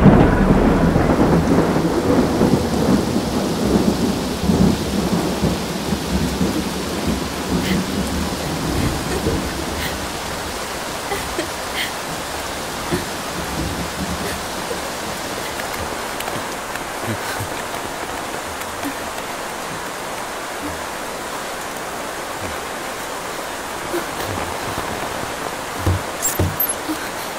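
Steady rain falling, with a long roll of thunder over the first several seconds that dies away about ten seconds in, leaving the rain alone.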